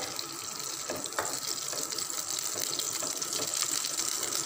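Butter melting in a hot nonstick frying pan, giving a steady soft sizzle, with a light scrape of a plastic spatula about a second in.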